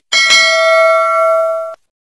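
Notification-bell ding sound effect: one bell strike ringing with several clear tones for about a second and a half, then cut off suddenly.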